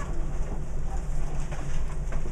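Classroom background noise: a steady low hum with nothing standing out above it.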